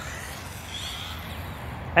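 Steady low rumble of distant road traffic, with a faint short high chirp about a second in.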